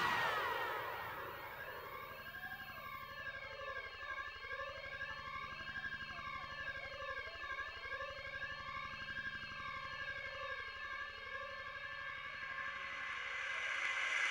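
A breakdown in a tech house DJ mix. The beat drops away, leaving a sustained electronic synth layer whose many tones sweep slowly down and back up about every three and a half seconds, with a siren-like rise and fall. It swells again near the end.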